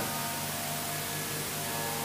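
A soft, steady drone of several held tones over a constant hiss in the amplified sound. A pair of higher tones drops out early on, and a new one comes in about halfway.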